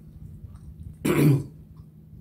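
A woman coughs once, a single short, loud burst about a second in.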